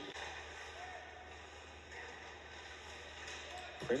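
Quiet background: a faint steady low hum under faint noise, with a commentator's voice starting right at the end.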